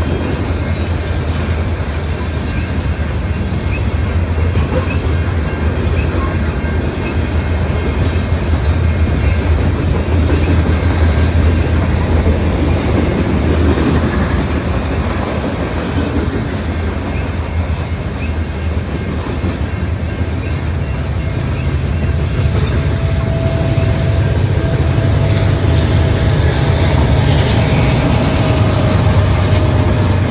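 A long freight train's railcars rolling past with a loud, steady rumble. About two-thirds of the way through, the low rumble grows and a thin steady whine joins it.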